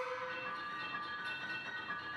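Contemporary chamber ensemble of strings, flute, piano and percussion playing slow, sustained music: one steady held note under higher held notes that shift every half second or so.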